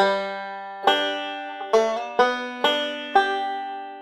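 Five-string banjo picked slowly, about six notes each left to ring: a single note and a pinch, then a slide lick.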